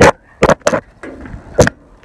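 Four sharp knocks: one at the start, a quick pair about half a second in, and another a little after one and a half seconds. They are handling knocks against the swamp cooler's sheet-metal cabinet while the plastic water supply tubing is fed in and fitted.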